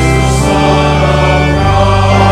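Congregation singing a hymn with organ accompaniment, held chords that change about half a second in and again near the end.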